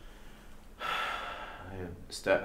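A person's audible intake of breath, lasting about a second and starting nearly a second in.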